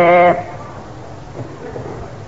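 A man's voice holds a long, wavering vowel at the end of a phrase of a Burmese Buddhist sermon, then stops sharply, leaving a pause with a faint steady hiss.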